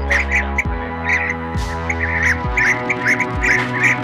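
Blue-tailed bee-eater calls: a rapid run of short rolling chirps, several a second, played as a lure recording. Under them runs background music with sustained chords and a low thud about once a second.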